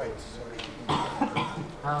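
A person coughing, sudden and short, followed near the end by a man's brief "uh".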